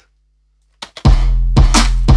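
Programmed trap drum pattern starting about a second in: a deep kick with a long low tail, regular hits about twice a second, and a bright layered clap-and-snare hit on the backbeat, with a fast, punchy snare sample stacked under the claps.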